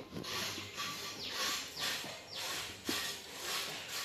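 Whiteboard marker writing on a whiteboard: a run of short strokes, several sliding down in pitch.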